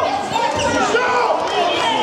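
Wrestlers' bodies thumping onto the mat during a throw and scramble, about half a second in, with several voices shouting over it.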